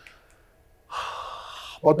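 A man breathing in audibly, close to the microphone, for just under a second, starting about a second in, after a short pause; a spoken word follows at once.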